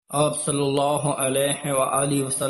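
A man's voice chanting a held, melodic devotional line, starting abruptly after a momentary drop to silence.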